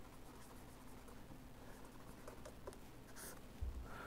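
Faint scratching of a pen writing a word on paper and underlining it, with a soft low thump near the end.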